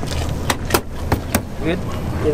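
Steady low rumble with four sharp clicks in quick succession between about half a second and a second and a half in, then a brief voice near the end.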